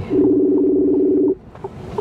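Truck horn sounding one steady blast of about a second, two notes together, cut off sharply.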